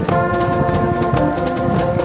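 Brazilian marching band (fanfarra) playing: trumpets, trombones and other brass hold sustained chords, changing notes about a second in, over bass-drum and snare beats.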